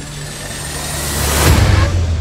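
A motor vehicle engine running close by, with a low steady drone that swells to its loudest about a second and a half in, then eases off.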